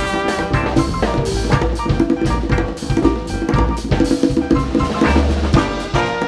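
Live Afro-jazz band playing, with the drum kit busy and to the fore, hand percussion and double bass underneath.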